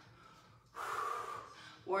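A woman's breathy exhale, lasting about a second and starting a little way in, as she breathes out with exertion while exercising.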